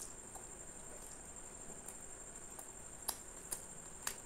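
Close-miked eating sounds: a man chewing a mouthful of paratha and curry, with scattered wet mouth clicks and smacks, the two sharpest about three seconds in. Under them runs a steady high-pitched whine.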